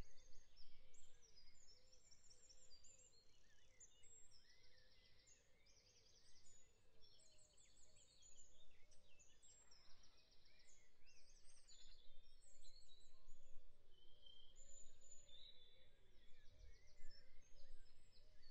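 Faint birdsong from several birds, short chirps and quick trills over a soft hiss, dropping almost to nothing for a few seconds and then returning.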